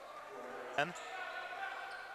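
Faint live court sound of a basketball game in a large hall: players running up the hardwood court, with a brief shout a little under a second in.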